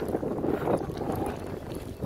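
Wind noise on the microphone over outdoor street noise.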